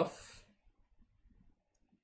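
A man's voice trailing off in a breathy hiss that ends about half a second in, then near silence broken by faint ticks from a stylus writing on a tablet.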